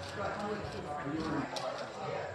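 Indistinct talking of people in the room, too unclear to make out words, with a light sharp click near the end.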